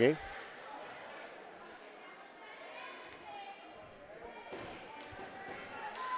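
Quiet gymnasium ambience with faint crowd chatter, and a few basketball bounces on the court floor about four to five seconds in.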